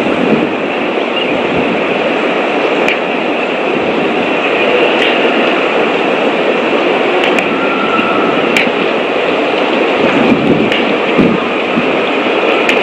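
Steady rushing background noise picked up by an outdoor nest-camera microphone, with a few faint ticks.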